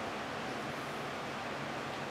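Steady background hiss with a faint low hum: workshop room tone, with no events.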